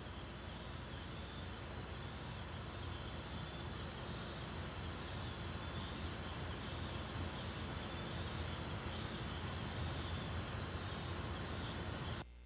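Crickets chirping: a steady high-pitched trill with a shorter chirp repeating about once every 0.7 seconds, over a low hum.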